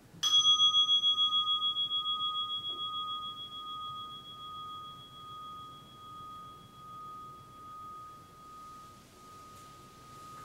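A meditation bell struck once, ringing with a long, slowly fading tone that wavers in loudness. It sounds at the close of the 30-minute sitting period. A faint rustle of cloth comes near the end.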